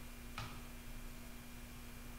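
Quiet room tone with a steady low hum, and a single short click about half a second in.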